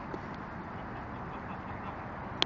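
Geese on the water giving a few short calls over a steady background noise.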